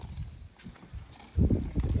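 Low, irregular rumbling and buffeting on the phone's microphone from wind and handling, quiet at first and turning much louder about one and a half seconds in.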